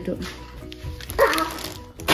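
A single short, high yelp about a second in, over quiet background music.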